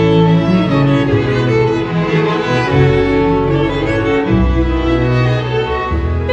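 Chamber string orchestra playing an instrumental passage, violins over cellos and double bass, with long held notes in the low strings.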